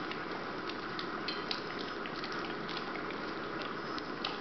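A dog chewing a piece of banana, with small irregular wet clicks and smacks over a steady hiss.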